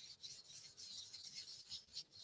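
Faint rubbing and rustling of paper scraps handled with the fingers, in short irregular scrapes.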